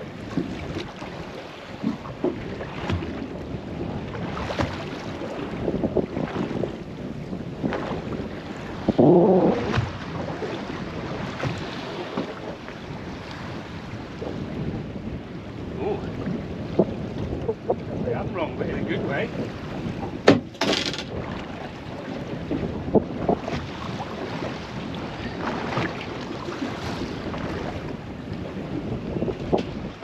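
Wind on the microphone and water lapping against a small boat's hull, with scattered light knocks and one sharp knock about twenty seconds in.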